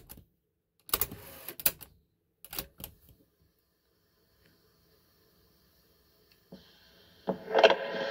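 Piano-key transport controls of a 1970s Panasonic RQ-309S cassette recorder, several mechanical clicks and clunks in the first three seconds as the Stop and Play keys are worked. Near the end, tape playback starts from the built-in speaker with a steady hiss and faint hum.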